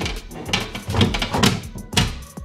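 Aluminum dry-hatch lid being dropped into its aluminum hatch frame, with several metal knocks and scrapes as it is settled into place.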